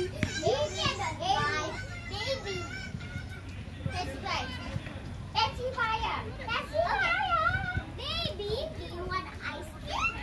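Several children shouting and calling out, high-pitched voices overlapping on and off throughout.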